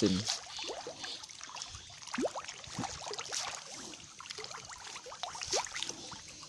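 Nile tilapia feeding at the pond surface on floating pellets: a scatter of small irregular splashes and pops in the water.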